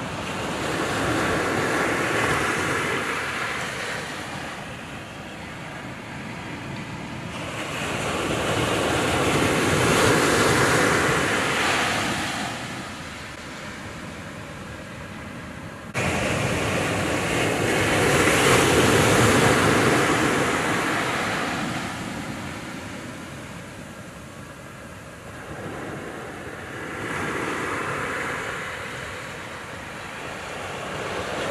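Ocean surf breaking on a sandy beach: a rushing wash that swells and fades about every eight to nine seconds, with an abrupt jump in level just past halfway through.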